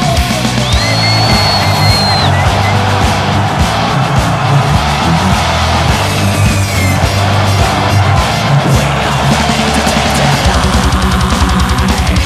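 Loud heavy rock music with drums. About ten seconds in, the drums break into a fast, even beat.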